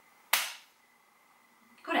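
A single sharp hand clap about a third of a second in, with a brief ring in the small room.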